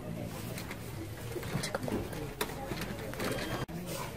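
Low, indistinct murmured voice sounds over store background noise, broken by a sudden brief drop in level near the end.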